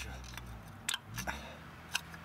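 A few short, light clicks and scrapes of a hand groping among loose fragments of a broken water pump's plastic parts inside an engine's pump housing, over a low steady hum.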